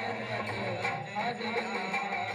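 Men singing a Hindi devotional bhajan into microphones, with melodic, wavering voices over held notes on a Roland XPS-10 electronic keyboard.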